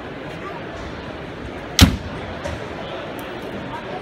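A single sharp bang about two seconds in, much louder than everything else, over a steady background murmur of crowd voices.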